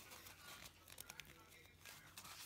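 Faint tearing and rustling of soft toilet tissue being ripped into small pieces by hand, with a few soft crackles in the middle.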